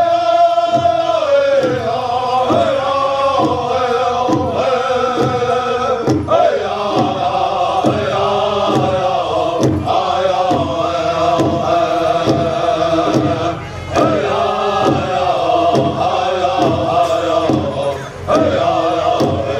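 Southern-style powwow drum group singing a flag song: several men singing together in chant over a large powwow drum struck in a steady beat, with a short break in the singing a little past the middle.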